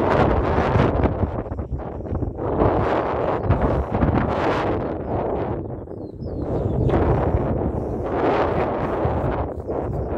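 Wind buffeting a phone's microphone in gusts, a heavy rumbling rush that rises and falls, easing for a moment around the middle.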